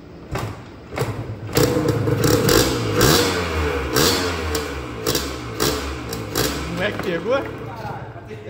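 Yamaha DT 180's two-stroke single-cylinder engine, long laid up, fires after two thumps and catches about a second and a half in on gasoline fed into the carburettor. It then runs unevenly, revved up and down.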